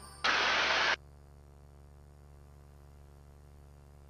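A burst of static on the helicopter's intercom audio, lasting under a second, that cuts in and out abruptly. After it comes a faint, steady low drone of the helicopter heard through the intercom feed.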